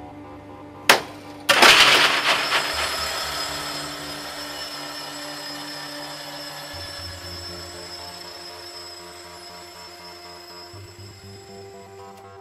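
Circuit breaker operating: a sharp click about a second in, then half a second later a loud mechanical clack that rings and dies away slowly over several seconds. Steady background music runs underneath.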